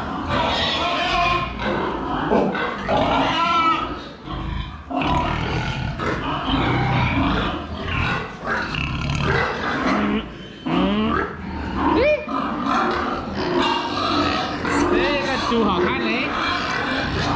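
Pigs in concrete pens grunting continuously, with a few short high squeals that rise and fall in pitch, a few seconds in and again near the end.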